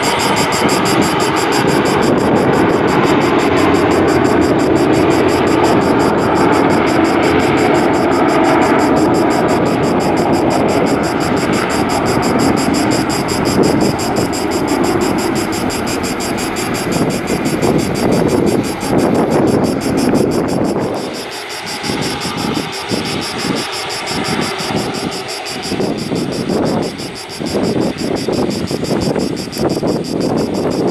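Airbus A330-243's Rolls-Royce Trent 700 turbofans running at taxi power: a steady loud jet roar with a high whine over it. In the last third it grows weaker and uneven, with repeated dips as the aircraft turns away.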